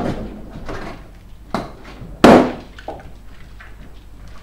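A sudden loud bang about two seconds in, with a short ring in the room: a balloon bursting while a puppy plays with it. Softer knocks and bumps of the balloons come before it.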